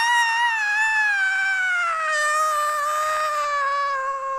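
A long, high-pitched cry voiced by an audiobook narrator: one held note that slides slowly down in pitch.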